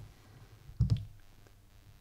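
A computer mouse clicks twice in quick succession, with a dull thump, about a second in. It is the loudest thing here; otherwise there is only faint room tone.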